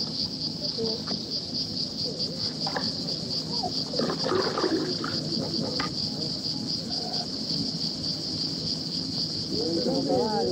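Insects chirring in a steady, high, pulsing drone, with faint distant voices and a few light knocks underneath.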